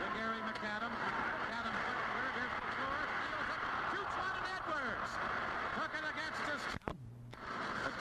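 Arena crowd noise with a commentator's voice in an off-air TV broadcast recording. A little before the end there is a click, and the sound drops out for about half a second, leaving only a low hum.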